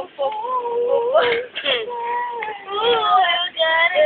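High children's voices singing in long, held notes that slide in pitch, with several sudden breaks between phrases.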